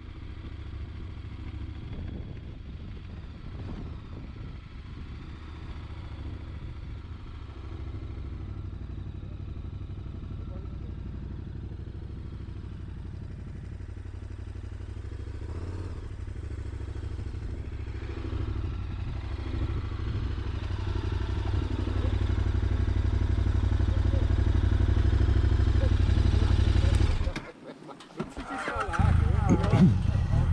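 Motorcycle engine running at low speed with a steady low rumble, growing louder over the last several seconds, then cutting out suddenly near the end.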